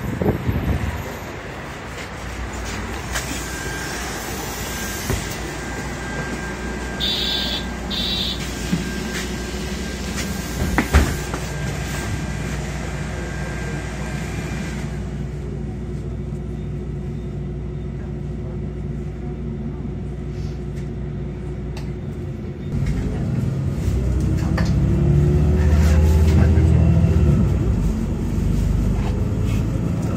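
MAN city bus engine running steadily while the bus stands at the stop, with two short beeps about seven seconds in. Heard from inside the bus, the engine gets louder and rises in pitch from about two-thirds of the way through as the bus pulls away and accelerates.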